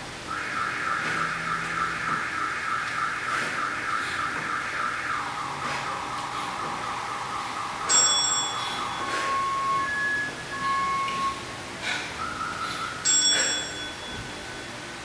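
Electronic signal tones, most likely an interval timer marking the change between timed exercises. A rapidly pulsing warble steps down in pitch about five seconds in. A bright bell chime rings about eight seconds in, a few short beeps follow, and a second chime rings near the end.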